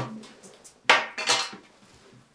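Crockery clattering on a glass tabletop: a knock at the start, then two louder, ringing clinks about a second in.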